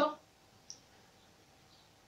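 A man's voice trails off at the start, then a pause of quiet room tone with one short faint click about two-thirds of a second in.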